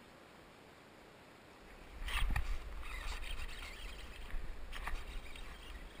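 Near silence, then about two seconds in a knock followed by rustling, light clicks and a low rumble: the angler handling gear and shifting in a plastic kayak.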